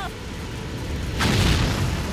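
Cartoon rocket launch sound effect: a low rumbling blast, with a louder rushing whoosh about a second in as the rocket lifts off.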